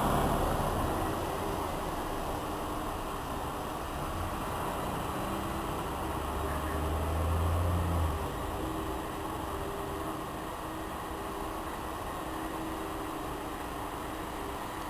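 City bus's diesel engine rumbling as the bus pulls up to the stop. The rumble builds to about eight seconds in, drops off suddenly as the bus halts, and then the engine idles steadily.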